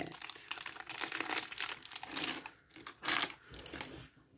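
A crinkly foil blind-bag wrapper rustling and crackling in the hands as it is pulled open and the figure taken out. The sound comes in irregular bursts, with a louder crackle about three seconds in.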